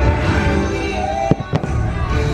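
Fireworks going off over loud music, with two sharp bangs close together about a second and a half in.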